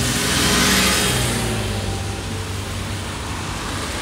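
A large road vehicle passing close in heavy city traffic on a rainy street: a steady low motor hum with a hiss of wet-road noise that swells about a second in, then eases.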